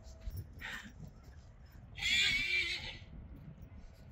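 A horse whinnying once about two seconds in, a high, wavering call lasting about a second. A short hissy sound comes just under a second in.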